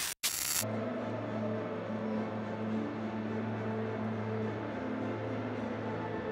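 A brief burst of static-like noise, then an ambient music bed: a steady low drone with slow held notes changing above it.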